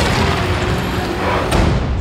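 Film-trailer score and sound effects: a dense, loud swell with a deep low rumble and a sharp hit about one and a half seconds in.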